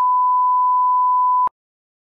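A steady, high electronic beep, one pure unwavering tone, cut off abruptly with a click about a second and a half in.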